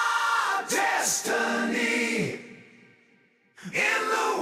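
A song with layered, choir-like singing. It fades out a little over two seconds in and drops almost silent, then the singing comes back in just before the end.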